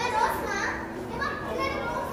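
Children's voices: a child talking or calling out in short high-pitched phrases, with other people's chatter around.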